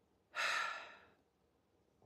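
A woman sighs, one long breath out through the open mouth lasting about a second and fading away.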